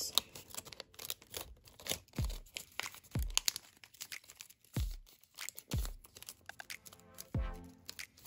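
Origami paper crinkling and crackling as it is creased and collapsed between the fingers, in many short irregular crackles, with a handful of soft low thumps spread through.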